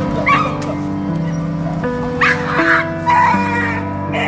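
Background music with long held notes, and over it an injured stray dog held on a catch pole crying out in short, high, wavering cries: once near the start and in a cluster around two to three seconds in. The cries are the dog's distress at being restrained.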